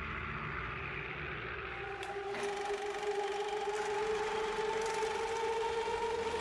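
A steady hiss, joined about two seconds in by a sustained drone of two held tones that rise slightly in pitch: sound design bridging into the next segment.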